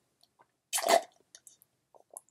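A short sip through a drinking straw a little under a second in, followed by a few faint mouth clicks.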